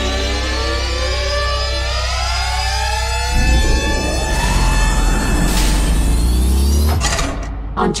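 Electronic sci-fi riser sound effect: many tones gliding upward together over a deep rumble, with a rushing noise swelling in about three seconds in. It cuts off sharply about seven seconds in.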